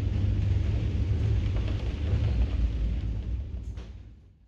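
Steady low rumble of a gondola cabin riding down its cable, fading out near the end.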